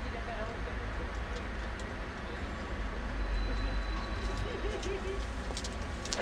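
Outdoor street background: a steady low rumble with faint, indistinct voices in the distance.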